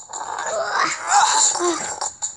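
A child's voice making drawn-out wordless sounds that slide up and down in pitch, loudest around the middle.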